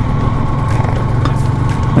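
Motorcycle engine running at a steady, even pace, heard from the rider's seat together with wind and road noise.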